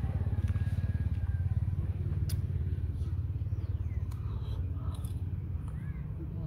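A small engine running steadily with a rapid low pulse, slightly louder in the first couple of seconds and then easing a little; a sharp click about two seconds in.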